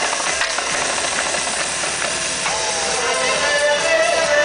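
Marching snare drum struck in quick stick strokes over loud backing music.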